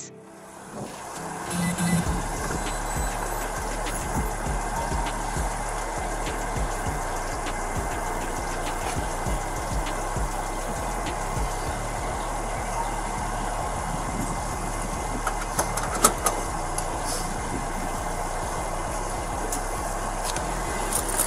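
Steady running hum of a vehicle engine, with scattered light clicks and one sharper click about sixteen seconds in.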